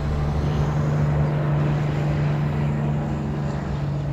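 A motor or engine running with a steady low hum, over a haze of noise, swelling slightly in the first half.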